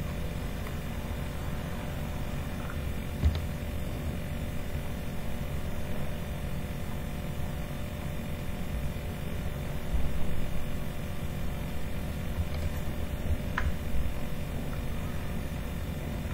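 Steady electrical hum with a hiss of background noise, broken by a few faint clicks.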